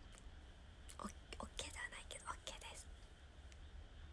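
A woman's voice, quiet and close to a whisper, muttering for a couple of seconds starting about a second in, over a low steady hum.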